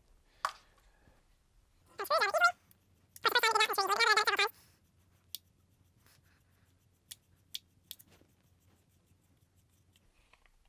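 Squeaking as the threaded top of a Benjamin ReCharge compressor's filter cylinder is twisted off by hand. The squeak comes in two wavering bursts, a short one about two seconds in and a longer one about three seconds in. A few light clicks of handling follow.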